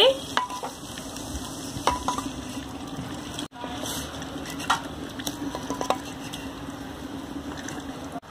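Wooden spatula stirring and scraping a thick mutton curry in a clay pot, with light sizzling and scattered knocks of the spatula against the pot over a steady low hum.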